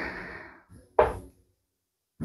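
A steel-tip dart striking a bristle dartboard: one sharp knock about halfway through.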